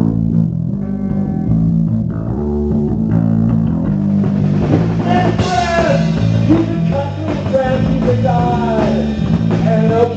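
Live rock band playing a song built on a riff: electric bass and drum kit with guitar, the bass line repeating low and steady. About five seconds in, a higher line with bending, sliding notes comes in over it.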